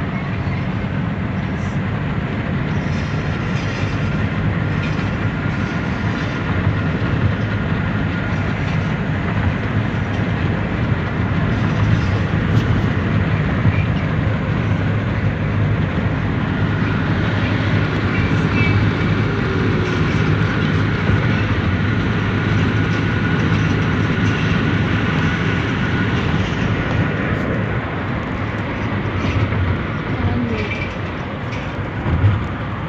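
Steady road noise inside a car cabin at highway speed: a low engine and tyre hum under a broad rush of wind and road noise.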